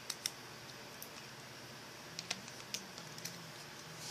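A few light, scattered plastic clicks and taps of hands pulling the battery out of a Samsung Galaxy Player 4.0 media player and handling its case.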